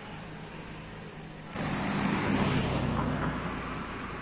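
Motor traffic: a steady low engine hum that swells suddenly about a second and a half in and eases off near the end, like a vehicle going by.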